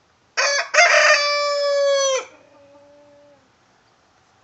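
Rooster crowing once, loudly: a short opening note, then a long held note that cuts off about two seconds in, followed by a fainter, lower drawn-out tail.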